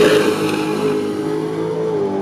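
Chevrolet El Camino drag car's engine at full throttle as it launches down the drag strip, holding a loud, steady high pitch.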